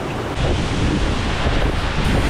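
Fast monsoon stream rushing over boulders below a waterfall, a loud steady roar of water, with wind buffeting the microphone. The sound jumps louder and deeper about half a second in.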